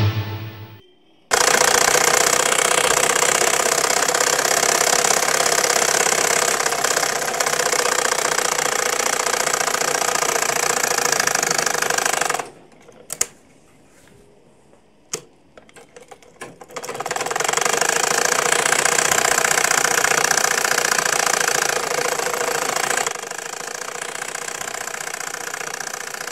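Sewing machines running steadily in a tailoring shop. They stop about halfway through, leaving a few clicks for about four seconds, then run again, lower near the end.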